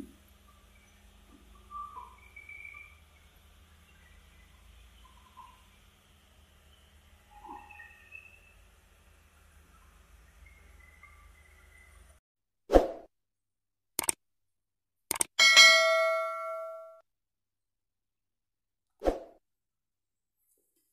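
Faint background hum for about twelve seconds, then the sound cuts out and edited outro sound effects follow: a few sharp clicks and a loud, bell-like ding that rings for over a second, the loudest sound, with one more click near the end.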